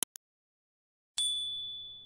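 Animated end-screen sound effects: two quick clicks at the start, then a little over a second in a single high notification-bell ding that rings on and fades away.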